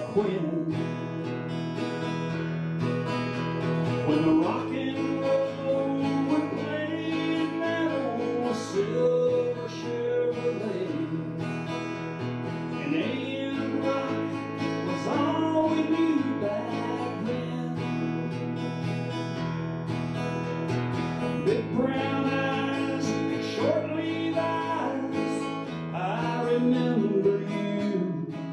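Instrumental break in a slow country song, with no singing: an acoustic-electric guitar strums steady chords under a sliding melodic lead line.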